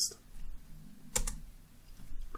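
A single sharp click of a computer keyboard key about a second in, pressed to advance a presentation slide.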